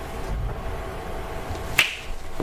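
Steady low room hum, with one short, sharp click near the end.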